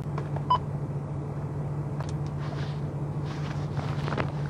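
Steady low hum inside a car cabin, with a short electronic-sounding beep about half a second in.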